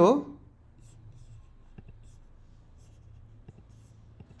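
A man's speech trails off right at the start, then a few faint, short mouse clicks over the low hum of a quiet room.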